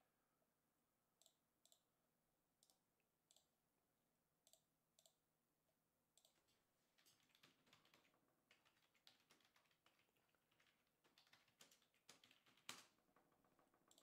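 Faint typing on a computer keyboard: a few separate clicks in the first half, then a steady run of keystrokes from about halfway, with one louder click near the end.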